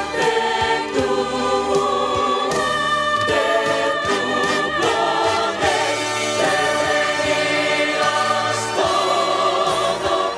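Mixed choir of men and women singing into microphones, holding sustained chords that change every second or two.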